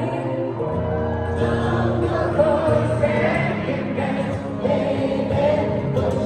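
Live pop song sung in an arena, with the crowd singing along in a mass of voices over the music; a low held bass comes in about a second in.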